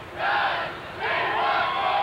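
A lacrosse team's huddle chant: a group of men shouting together in a rhythmic chant. A short shout comes first, and about a second in, a longer drawn-out one.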